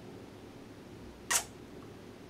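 A single short, sharp click about a second and a half in, over quiet room tone.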